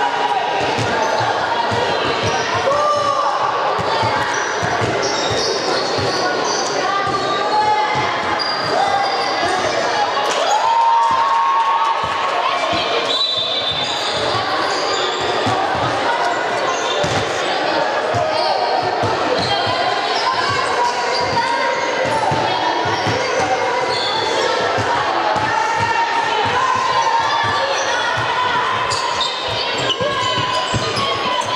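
A basketball bouncing repeatedly on a wooden court floor during play, with many short knocks throughout, echoing in a large sports hall.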